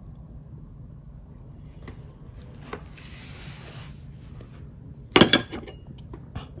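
A brush rubbing and swishing faintly on xuan paper, then a sharp porcelain clink about five seconds in as the brush is set down on a porcelain dish.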